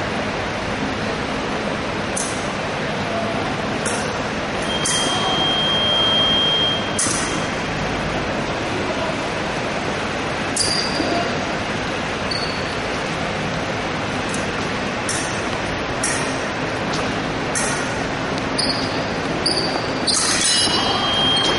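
Épée blades clinking against each other in short, sharp metallic clicks, over the steady din of a large gym hall. About five seconds in, an electronic fencing scoring box sounds a steady high beep for about two seconds, and a few shorter high beeps come later.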